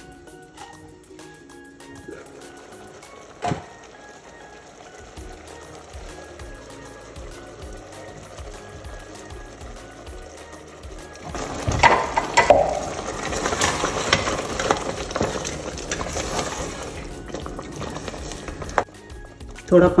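Ground masala paste (coconut, cashews, almonds, garlic, browned onion) dropped into a pot of simmering mutton curry, sizzling and bubbling from about eleven seconds in and fading near the end. Before that, soft background music with a single knock.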